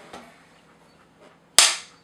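Neewer film clapperboard snapped shut once, about one and a half seconds in: a single sharp clap with a short ring-out, slating the start of a take.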